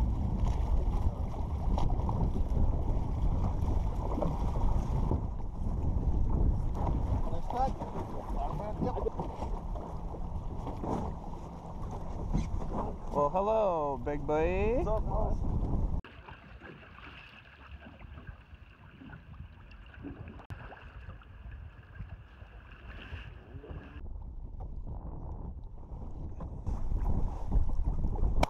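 Wind buffeting the microphone and sea water slapping around small boats at close quarters. About halfway through the noise drops off abruptly to a quieter stretch with a faint steady whine.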